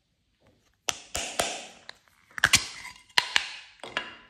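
Hard plastic ice-pop mold being handled and pried open: a run of sharp plastic clicks and taps, beginning about a second in, several in quick pairs.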